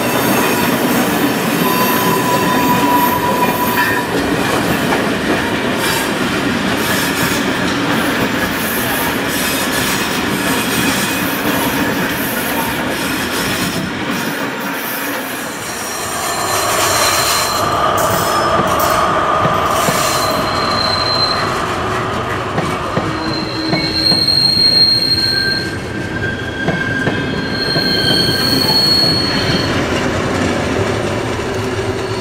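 A train of passenger coaches rolling past, steel wheels on rail. In the second half the wheels squeal in high, wavering whistles as they go around curved track through points.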